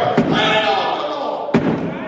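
A man's raised voice at a pulpit microphone, echoing in a large hall. Two sharp thumps cut through it, one just after the start and one about a second and a half in.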